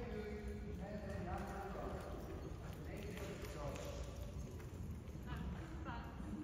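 Hoofbeats of a horse cantering on the sand surface of an indoor arena, with a voice talking indistinctly over them.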